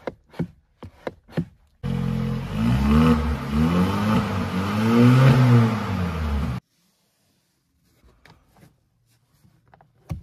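Changan UNI-V's 1.5-litre turbocharged engine revved repeatedly while the car stands still, its pitch rising and falling four or five times in quick succession before the sound cuts off suddenly. A few light clicks come just before the revving.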